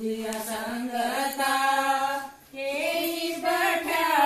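Women singing a devotional song together in long, drawn-out lines, with a short break about two and a half seconds in.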